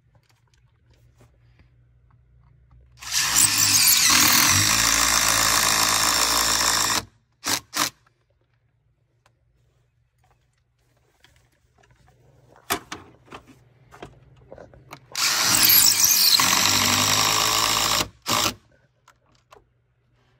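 Cordless DeWalt impact driver running in two long bursts of about four and three seconds, each followed by a short blip or two of the trigger. It is driving screw-in hurricane-panel anchors into pre-drilled holes in brick.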